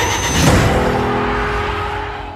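Film-trailer soundtrack: a dense wash of noisy sound effects with a hit about half a second in, then a held low musical tone that slowly fades.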